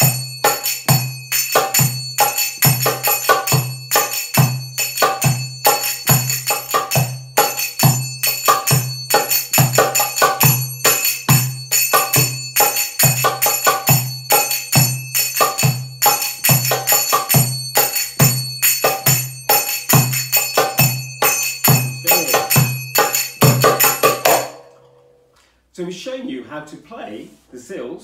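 Brass finger cymbals (zills, sagats) struck rapidly in a 3-3-7 triplet pattern, ringing bright and metallic, over a darbuka playing the Ayoub rhythm with its deep doum strokes repeating steadily underneath. The playing stops together about 24 seconds in.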